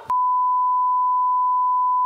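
Television test tone (the steady reference beep played with colour bars), cutting in abruptly just after the start and holding one unchanging pitch throughout.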